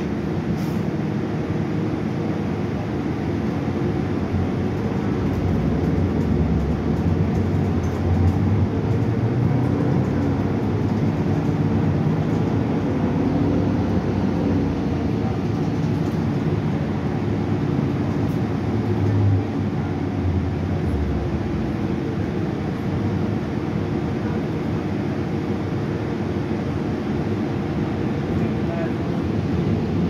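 Cabin sound of a Gillig hybrid transit bus under way: the Cummins ISB6.7 diesel and Allison hybrid drive running with road noise, a steady low rumble. It gets a little louder about six seconds in and eases again just after nineteen seconds.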